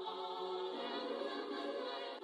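Outro song: held choir-like voices sustaining a chord, which shifts to a lower note a little under a second in.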